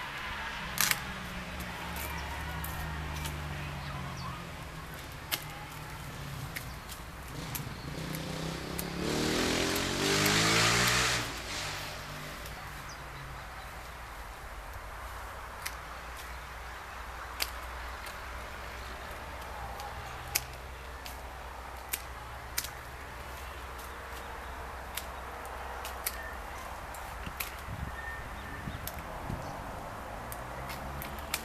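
Hand pruning shears snipping thin apricot branches: sharp clicks scattered irregularly, several seconds apart. About nine seconds in, a louder rushing noise with a wavering low pitch lasts a couple of seconds, over a steady low hum.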